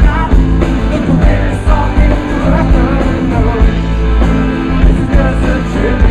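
Live rock band playing loud through a festival PA, drums and guitars driving a steady beat, heard from within the crowd.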